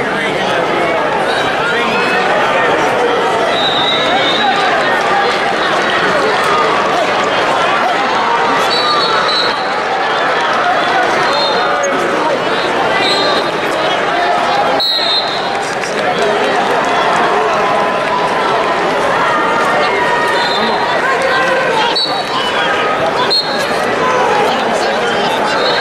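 Arena crowd talking: a steady babble of many voices, with short, high referee whistle blasts from other mats now and then.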